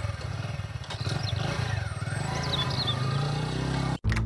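Motorbike engine running just after being started, a steady low idle that revs up slightly near the end, with a few brief bird chirps over it.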